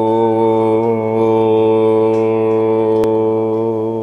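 A man's deep voice chanting one long, steady held syllable with a slight waver.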